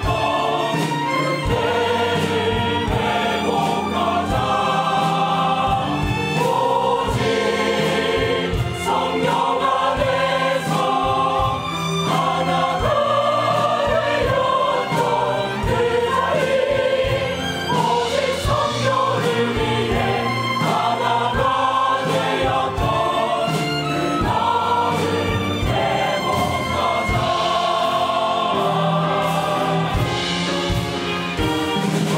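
Mixed choir of men's and women's voices singing a worship anthem, with violins accompanying.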